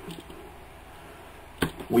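Plastic toy robot figure's parts clicking as they are moved during transformation: one sharp click about one and a half seconds in, then a fainter one, over quiet handling.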